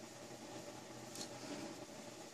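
Quiet room with a faint steady hum, and a single faint click a little over a second in as pliers work a loop in fine wire.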